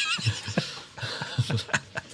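People laughing: a high, wavering squeal of a laugh at first, then a quick run of short, breathy laughing pulses, about five a second.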